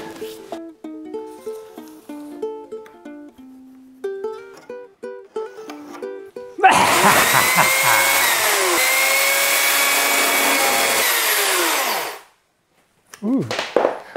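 A short plucked-string tune plays for the first six seconds or so. Then a cordless electric chainsaw starts abruptly and runs loud for about five and a half seconds, cutting into a wooden plank, with a man's shout over it, and cuts off suddenly.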